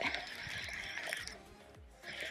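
Shimano Curado 301HG baitcasting reel being cranked on the retrieve: a soft, steady whir that fades out near the end.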